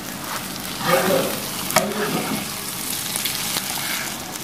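An egg omelette sizzling and frying in hot oil in a pan, with a steady hiss. A metal spatula is worked in the pan and gives one sharp click just under two seconds in.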